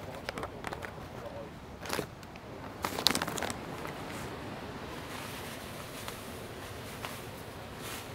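A few faint clicks and light knocks from ingredients and packaging being handled, mostly in the first half, over a steady low background hiss.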